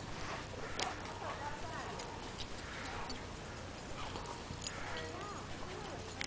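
Two German Shepherds play-fighting in snow at a distance: faint scuffling with a few scattered light clicks over a low background, and faint voices.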